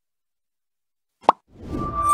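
Dead silence, then a single short, pitched pop sound effect about a second and a quarter in, opening a broadcaster's outro jingle whose music swells in near the end.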